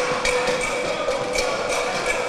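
Background noise of a busy public hall: a steady hum and haze with a few sharp knocks scattered through it.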